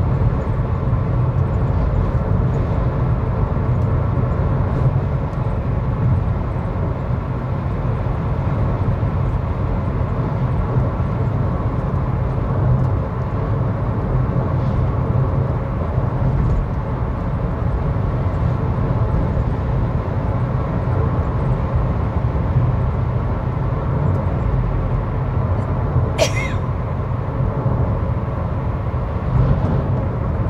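Steady road noise inside a car cruising at highway speed: a low, even rumble of tyres and engine, with one brief sharp click near the end.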